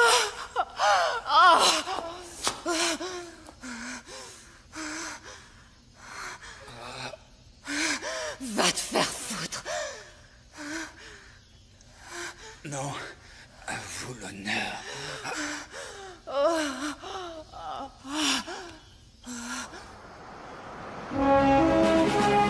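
A person gasping and moaning in short, uneven bursts of breathy cries with sliding pitch. Music comes in near the end.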